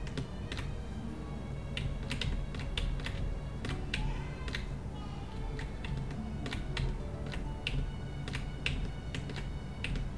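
Computer keyboard keys clicking in irregular single presses, about two a second, over a low steady hum.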